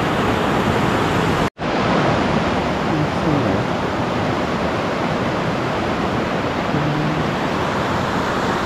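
A river rushing over rocks, a loud steady roar of water, with a split-second dropout about a second and a half in.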